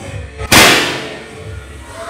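A confetti cannon firing once: a single loud, sharp bang about half a second in that dies away over about half a second.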